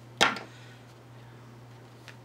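A single short, sharp knock about a quarter second in, over a steady low hum.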